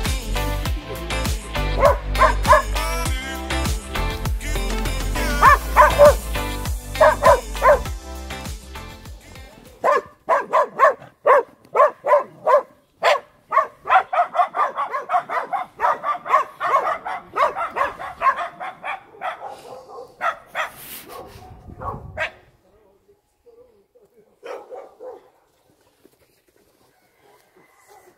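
Music with a steady bass plays for about the first ten seconds. Then small dogs bark in quick, short yaps, two or three a second, for about twelve seconds, and the barking stops suddenly.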